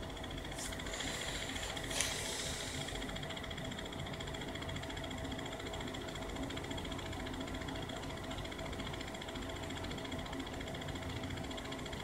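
Faint, eerie droning soundtrack of several steady held tones over a hiss, with a small click about two seconds in.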